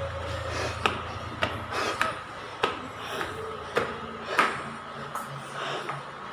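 Footsteps climbing concrete stairs with metal-edged treads in a stairwell, a sharp step landing roughly every half second to a second, unevenly.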